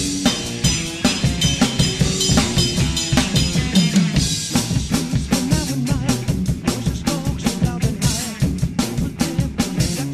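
Acoustic drum kit with Paiste cymbals played fast and steadily, dense bass drum, snare and cymbal hits, over a rock song's recording whose guitar and bass run underneath.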